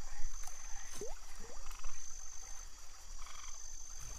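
Iberian water frogs croaking from a pond in a few short bouts, over a steady high-pitched tone.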